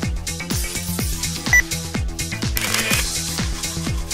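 Dance music with a steady kick-drum beat, a little over two beats a second. A short sharp click comes about a second and a half in, and a brief noisy burst near three seconds.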